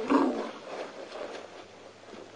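African elephant giving a short, rough roar, about half a second long, right at the start, then dying away.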